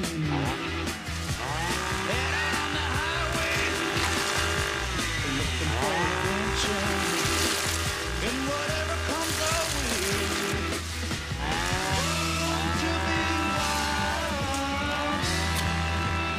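Music with a steady bass line, and over it a chainsaw's engine revving up and down again and again as it cuts into a hedge.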